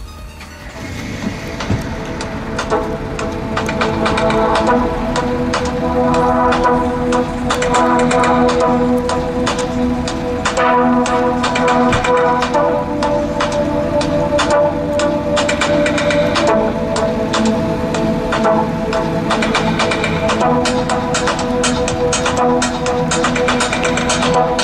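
Electronic music played very loud through a car audio system's front speakers, heard from a distance, coming in over the first few seconds and then holding at full level.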